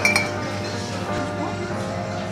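A glass vase clinks once, sharply, as it is picked up off the shelf, leaving a short high ringing tone.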